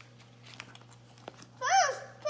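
Soft rustle and light taps of a picture book's paper pages being turned, then near the end a young child's loud, very high-pitched vocal call that rises and falls in pitch.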